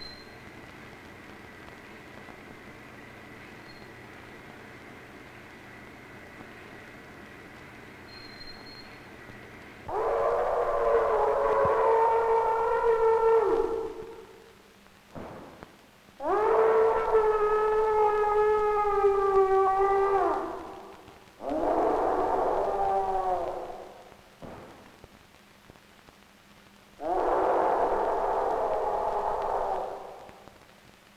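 A steady hiss, then from about ten seconds in four long held pitched notes, each three to four seconds long and sliding slightly down in pitch, with short gaps between them.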